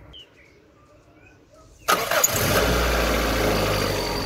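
Toyota 4E-FE 1.3-litre four-cylinder engine starting up suddenly about two seconds in and running steadily, its first start with a newly fitted aftermarket fuel pressure regulator.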